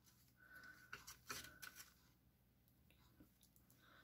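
Near silence, with a few faint rustles and soft clicks in the first two seconds as the knitting and its needles are handled.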